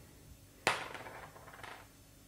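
A small die thrown onto a hard tabletop: it lands with one sharp click about two-thirds of a second in, then tumbles with a few quieter clicks for about a second before coming to rest.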